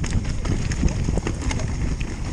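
Mountain bike descending a rocky trail at speed: tyres running over loose stones with a continuous low rumble, broken by many irregular sharp knocks and clatters from stones and the bike.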